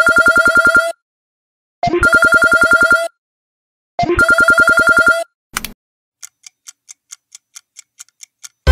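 Telephone ringing: three trilled rings of about a second each, with short gaps between. Then, from about six seconds in, a clock ticks quickly, about four ticks a second.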